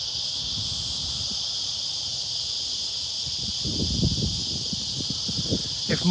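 A steady, high-pitched chorus of insects, with a low rumbling on the microphone for about a second and a half from three and a half seconds in.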